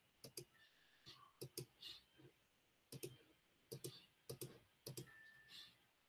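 Faint computer keyboard typing: scattered key clicks, often two close together, with short pauses between them.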